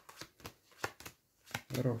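Playing cards being handled and dealt onto a cloth-covered table: a run of short, irregular card snaps and slaps.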